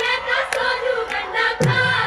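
Women's voices singing a Punjabi Giddha folk song in chorus over sharp rhythmic hand claps, about two claps a second.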